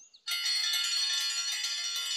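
A metal dinner triangle rung continuously: a bright, steady, metallic ringing that starts about a quarter second in. It is the call to a meal.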